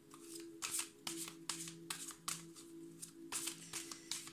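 A deck of oracle cards being shuffled by hand: a steady run of soft card flicks, about four a second.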